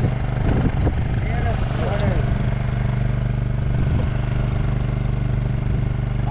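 A fishing boat's engine running steadily at idle, with men's voices calling out in the first couple of seconds.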